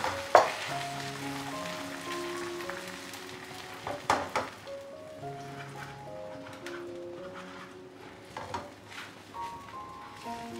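Beaten egg sizzling in hot oil in a frying pan while it is scrambled with wooden chopsticks, with a few sharp knocks of the sticks against the pan, the loudest about four seconds in and two more near the end. Soft background music plays a slow melody of held notes throughout.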